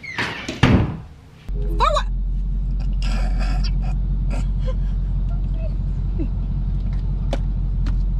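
A loud thump like a door shutting, then, from about a second and a half in, a steady low hum inside a stationary car's cabin, with a brief exclamation and stifled laughter over it.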